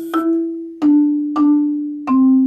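Malletech five-octave concert marimba played with mallets: about three single notes struck in a slow line that steps down in pitch, each ringing on and fading before the next.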